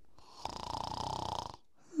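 A person's single rattling snore, lasting about a second, made as someone drops off to sleep.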